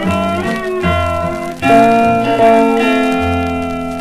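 Closing instrumental bars of a 1957 hillbilly string-band record, with plucked strings. A loud final chord comes in under two seconds in and rings on, fading toward the end.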